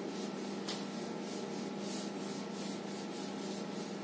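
A felt whiteboard duster wiping writing off a whiteboard in quick back-and-forth rubbing strokes, about three strokes a second.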